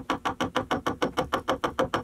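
Adze chopping into a kiln-dried ash beam to give it a hand-hewn, distressed surface: a rapid, regular run of sharp chops, about eight a second.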